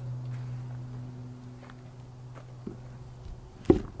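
A sheet of heavy birch plywood set down into a pickup truck's bed: a light knock, then one loud thud near the end. A steady low hum runs underneath until shortly before the thud.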